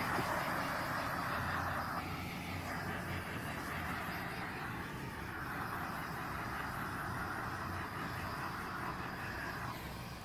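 Handheld gas torch burning with a steady hiss as its flame is played over wet epoxy resin; the hiss stops just before the end.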